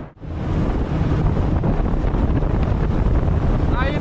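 Heavy wind buffeting the microphone as a fishing boat runs across open water, with the rush of water under the hull, steady throughout after a momentary dropout at the very start.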